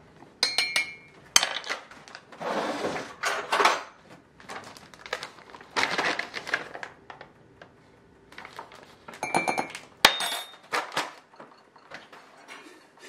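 A foil bag of slippery elm bark powder rustles and crinkles in bursts as powder is poured from it into a glass mug. Ringing clinks against glass come about half a second in and again around nine to ten seconds, with a sharp click near ten seconds.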